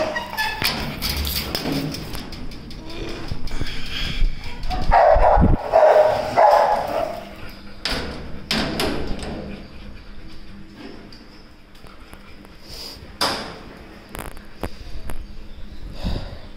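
A dog barks a few times about five seconds in. Then come several sharp metallic knocks and clanks from a welded rebar kennel gate and its sliding bolt latch as it is worked by hand.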